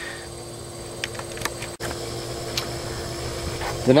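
A steady low hum with a few faint ticks, broken by a sudden brief dropout a little under two seconds in.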